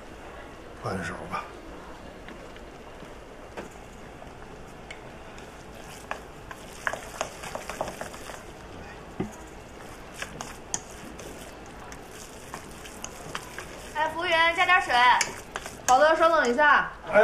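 Small scattered clicks and clinks of a spoon against a bowl and utensils as meatball filling is seasoned and stirred, over a steady low kitchen hiss. A voice speaks briefly near the end.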